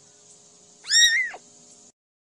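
A young kitten mewing once, about a second in: a single high-pitched call that rises slightly and then drops away at its end.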